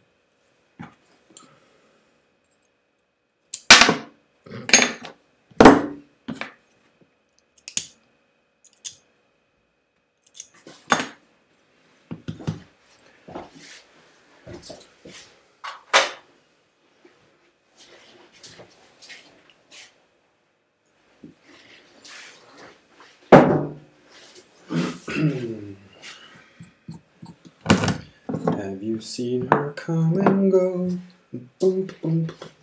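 Metal hand tools and small acrylic parts knocking and clinking against the vise and wooden workbench as they are handled and set down: about a dozen separate sharp knocks.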